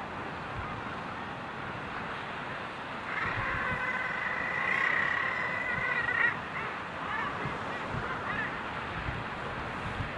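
Common guillemots calling on a crowded breeding ledge: one long call of about three seconds starting about three seconds in, then a few shorter calls, over a steady background rush.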